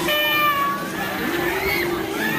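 A rider on a Roll Over fairground thrill ride screaming: one high, slightly falling cry lasting under a second, then a shorter rising-and-falling cry near the end.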